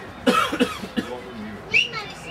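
A person close to the microphone coughing several times in quick succession, with one more cough about a second in. Near the end a brief high-pitched cry sounds out.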